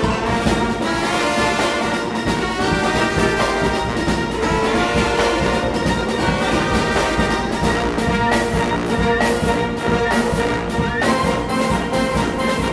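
Concert wind band playing: brass and woodwinds sounding together over a steady percussion beat.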